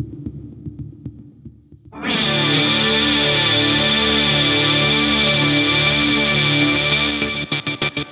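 Electric guitar played through a BOSS SL-2 Slicer pedal: a low pulsing sliced pattern, then about two seconds in a loud distorted chord sounds with a rhythmic pulsing pattern cut into it, breaking into sharply chopped stuttering slices near the end.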